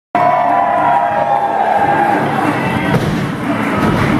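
Crowd cheering, with music playing.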